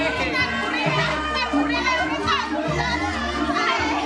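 A Banyumas calung ensemble playing, its bamboo xylophones sounding steady repeating notes with a kendang drum, under many voices calling out and chattering from the dancing crowd.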